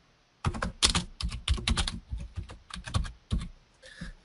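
Typing on a computer keyboard: a quick, irregular run of keystroke clicks lasting about three seconds.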